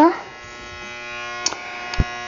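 A steady buzzing hum, with two light clicks near the end.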